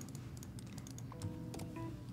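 Typing on a laptop keyboard: a run of light key clicks. Faint music tones come in during the second half.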